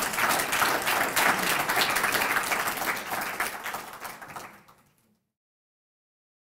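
Audience applauding after a closing speech. The clapping fades and cuts off to silence about five seconds in.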